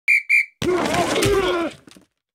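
Two short, sharp blasts of a referee-style whistle, followed by about a second of a louder, rougher sound with shifting pitches that fades out.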